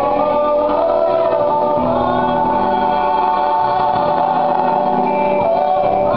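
A song from a live stage musical, sung in long held notes whose pitch moves slowly from one note to the next.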